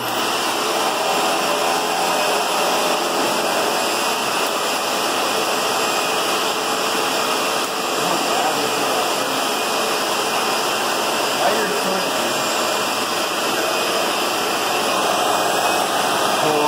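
Vacuum cleaner switched on suddenly and running steadily through its hose, the nozzle held against a head of freshly cut hair to suck it up.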